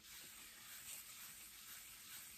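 Faint, steady rubbing of wire wool over the sanded top of a wooden base: the final buff that brings up a sheen on the wood.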